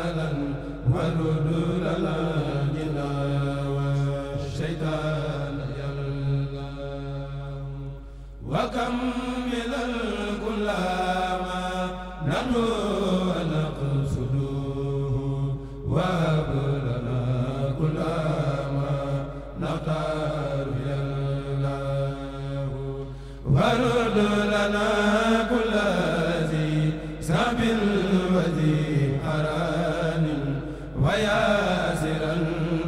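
Unaccompanied male chorus of a Mouride kourel chanting an Arabic khassida in unison, in long drawn-out, wavering melodic phrases with brief breaks between them. The singing grows louder near the end.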